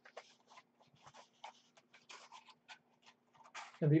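Sheet of construction paper rustling and scraping in short, irregular crinkles as it is handled and rolled into a cylinder, over a faint steady hum.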